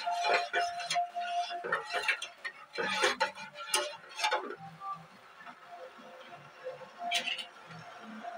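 Metal spoon stirring a steel pot of liquid, clinking repeatedly against the pot's rim and sides through the first four or five seconds, then quieter.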